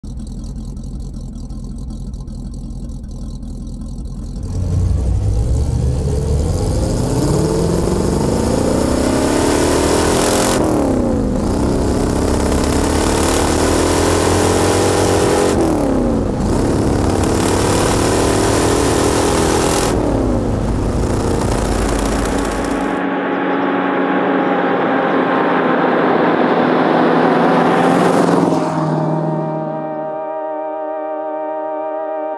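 Cadillac V8 in a Ford Model A hot rod coupe, idling low, then accelerating hard through the gears. The engine note climbs, drops at each of three upshifts and climbs again, then holds steady for the last few seconds.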